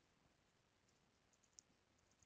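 Near silence, with a few faint computer keyboard clicks about one and a half seconds in as a file name is typed.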